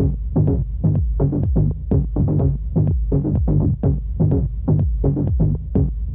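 Instrumental techno track: a low bass pulse repeating rapidly, several times a second, over a deep sustained bass.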